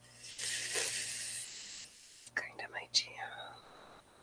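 A woman's breathy whisper: a long hiss of breath, then a few short, quiet voiced murmurs near the end.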